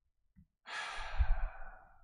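A person's long sigh, starting just over half a second in and fading away over about a second.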